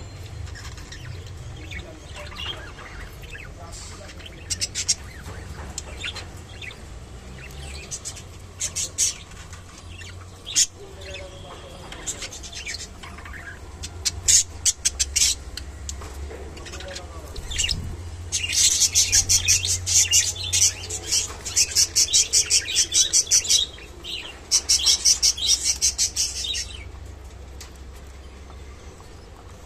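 Budgerigars chirping: scattered short chirps, then a long run of rapid, loud chirping through most of the last third, over a steady low hum.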